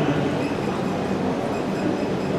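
Steady background noise in a large hall: an even rush with a faint low hum and no distinct events.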